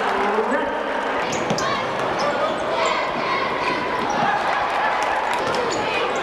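A basketball bouncing on a hardwood gym floor during play, over the indistinct voices of players and spectators in the gym.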